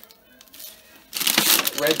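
Plastic produce bags and wrap crinkling loudly as bagged vegetables and fruit are handled, starting about a second in after a quiet moment.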